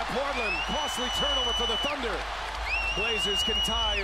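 Televised basketball game: arena crowd noise under a commentator's voice, with two long, steady high whistles, each about a second or more.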